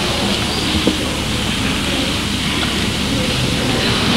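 Steady, even background noise of a crowd gathered in a large gym, a low murmur with no clear voices, picked up by a camcorder's microphone.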